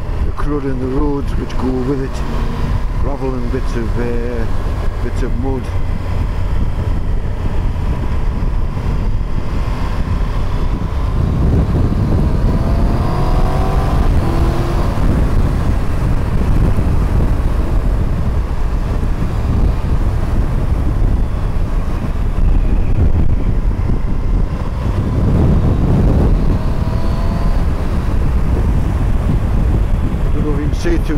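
Motorcycle engine running under way with heavy wind noise over the microphone. Twice the engine's pitch rises as it accelerates, about twelve seconds in and again near twenty-five seconds.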